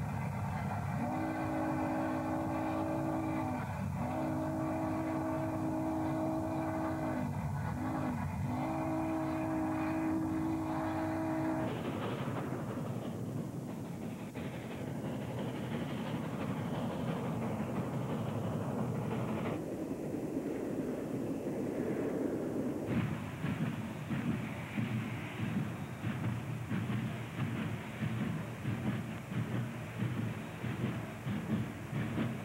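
Union Pacific 3959, a 4-6-6-4 Challenger steam locomotive, sounding its chime whistle in the long-long-short-long grade-crossing pattern for about ten seconds. The whistle then stops, and the rumble and exhaust of the engine passing at speed take over, becoming a rapid run of beats near the end.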